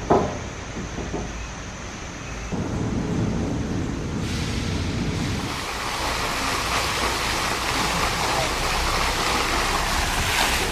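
Open-air ambience with a low rumble and a short knock at the start, then from about four seconds in a steady rushing of running water.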